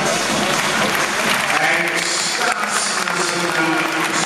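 Arena audience applauding at the end of a men's floor routine, with voices heard over the clapping.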